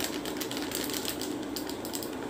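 Light, irregular clicking and scraping from preparing a sandalwood face pack by hand in a small container, over a steady low hum.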